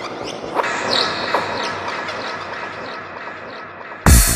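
Psytrance breakdown with no beat: a wash of synthesizer noise with many quick swooping, bird-like chirping effects gliding up and down. It grows quieter toward the end.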